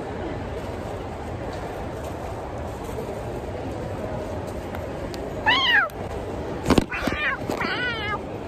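Three short, high-pitched meow-like squeals, each rising then falling in pitch, starting about five and a half seconds in, most plausibly a person's voice imitating a cat; a sharp knock, the loudest moment, falls between the first and second. Steady background hum underneath.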